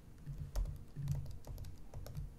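Typing on a computer keyboard: a run of light, irregular key clicks, several a second.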